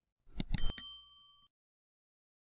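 Sound effect for a subscribe-button animation: quick mouse clicks, then a bright notification-bell ding that rings for about a second and stops.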